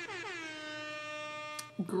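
Stream donation alert sound: a horn-like tone that glides down slightly, holds one steady pitch, and cuts off shortly before the end.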